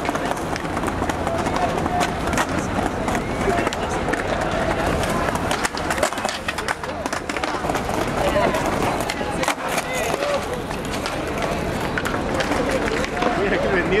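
A crowd of onlookers talking over one another while a skateboard rolls across paving tiles, with repeated sharp clacks from the board.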